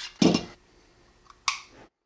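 Handling noise from a Beretta 92XI pistol: a short rustle of hands on the gun, then one sharp metallic click about one and a half seconds in.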